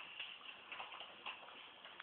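Faint, irregular light ticks and scuffles of pet ferrets moving and playing about.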